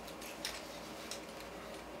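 Quiet room with a few faint, light clicks, one about half a second in and another about a second in.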